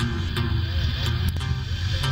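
A live band playing acoustic guitars over a steady bass line, with sharp picked notes.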